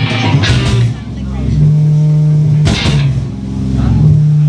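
Live stoner rock band playing heavily amplified guitar, bass and drums: long held low notes, with a cymbal crash about half a second in and another just under three seconds in.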